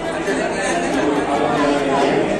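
A crowd of people talking over one another, their voices echoing in a large hall.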